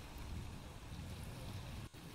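Outdoor shoreline ambience: steady low wind noise on the microphone over small waves washing against rocks, with a brief dropout near the end.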